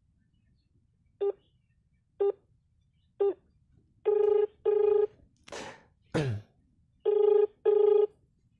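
Smartphone on speaker playing call-progress tones while a call connects: three short beeps a second apart, then a ringback tone in double rings (two short rings, a pause, two more), meaning the called phone is ringing and not yet answered. Between the two double rings come two brief whooshing noises, the second falling in pitch.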